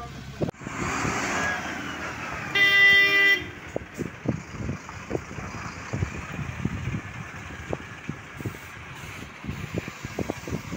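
Vehicles passing on a wet, potholed road: tyre and engine noise swells in the first couple of seconds, then a vehicle horn sounds once, briefly and loudly, about three seconds in. A large bus's engine runs low and steady afterwards, with uneven low knocks.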